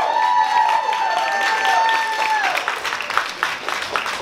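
Audience clapping and cheering, with a long high whoop held for about two and a half seconds before the clapping carries on alone.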